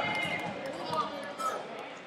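Shouted voices from coaches or spectators in a large hall: a long loud call fades out at the start, then two short shouts come about a second in and about a second and a half in, with a few light knocks.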